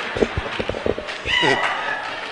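Laughter from a congregation: a run of short pitched ha-ha bursts, then a high-pitched laugh about a second and a half in.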